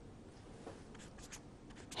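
Felt-tip marker writing on paper, a few faint short strokes as letters and numbers are drawn.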